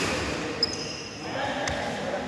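A badminton racket strikes a shuttlecock with a sharp crack about half a second in, with a short high ring after it. Players' voices follow near the end, in an echoing sports hall.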